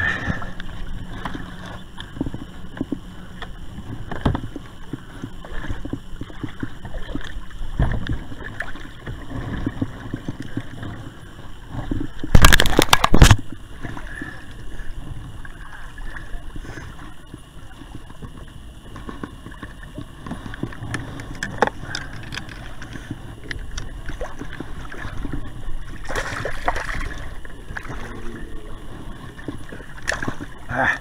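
Shallow river water sloshing and splashing around a wader's feet at a boat ramp, with irregular small knocks. One loud, brief burst of noise comes about twelve seconds in.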